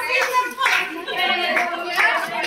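Women clapping their hands over a group of women's voices, the clapping that goes with a Pahari gaali (teasing) wedding song.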